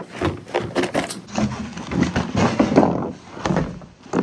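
Objects being handled and moved about on a table during setup: a rapid series of knocks, clicks and clatters.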